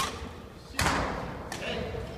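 Badminton rally: a sharp crack of a racket striking the shuttlecock at the start, then a louder thud less than a second later that dies away slowly, with voices around it.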